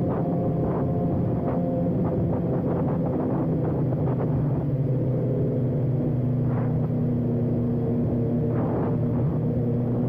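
BMW S1000RR inline-four sportbike engine running steadily at a low cruising speed, its note shifting a little in pitch, heard from the rider's seat. Other sportbikes riding close alongside add to the engine sound.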